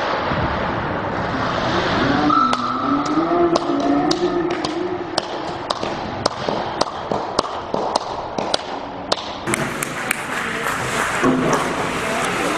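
Scattered sharp knocks and claps in an ice hockey rink, two or three a second, growing busier near the end. A voice calls out briefly around two to four seconds in.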